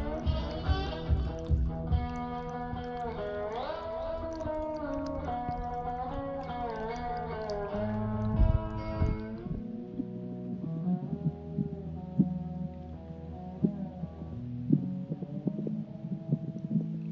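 Harmonica and guitar music from a one-man band: the harmonica plays a melody with bent, sliding notes over strummed guitar for the first half, then lower guitar notes carry on alone.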